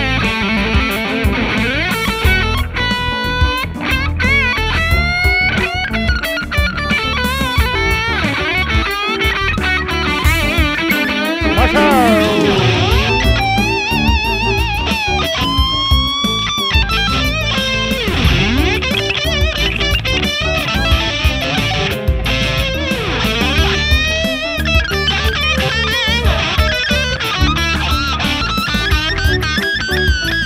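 Fender Rarities Flame Maple Top Stratocaster electric guitar playing a lead solo over a backing track. The solo has frequent string bends and wide vibrato, with a lightly driven tone.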